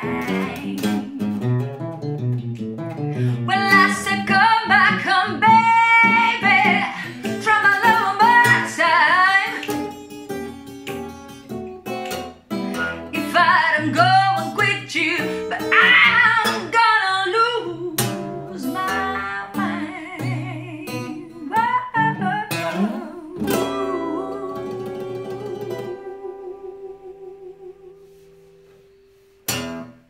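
A woman singing with a fingerpicked acoustic guitar. Near the end the song closes on one held note that fades away over several seconds.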